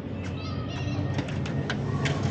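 Outdoor ambience: a steady low rumble, with a short run of high chirps about half a second in and a few sharp clicks in the second half.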